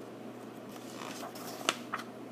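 A picture book's page being turned by hand: soft paper rustling, with a sharp tap near the end.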